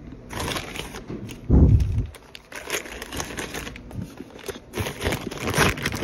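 Plastic packaging crinkling and rustling in the hand, with close handling noise and a dull low thump about a second and a half in.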